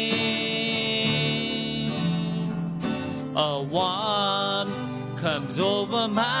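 A man singing to his own strummed acoustic guitar. He holds one long note for about the first three seconds, then moves into a new phrase with sliding pitches.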